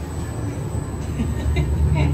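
A large walk-in wheel turning as a person walks inside it, giving a steady low rumble like a train car rolling that grows a little louder toward the end.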